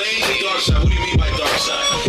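Hip hop track: a vocal rapped over a beat with deep bass kicks about twice a second.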